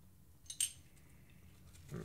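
A single short, sharp click with a brief high clink about half a second in, from handling a Kore Essentials X7 ratchet belt buckle.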